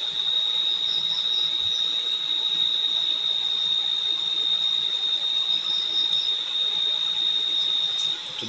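Steady high-pitched trill of crickets, one unbroken tone with a faint hiss behind it.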